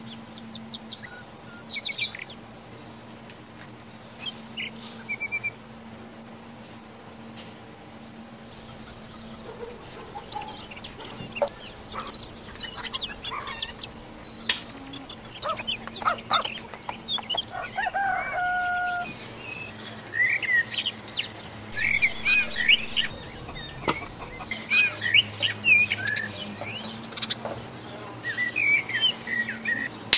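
Birds chirping in the background, many short quick calls throughout, with some chicken clucks. Occasional light clicks from small electronic parts being handled, over a faint steady hum.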